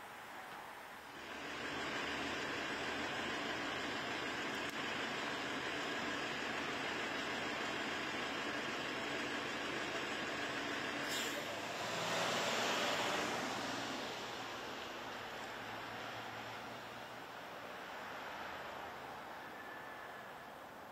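City street traffic with a bus engine running close by. About eleven seconds in comes a sharp pneumatic hiss of air from the bus, lasting about two seconds, the loudest sound here.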